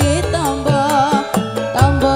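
Live campursari band playing a Javanese koplo-style song: a woman singing with a wavering, bending melody over steady drum strokes, bass and keyboard.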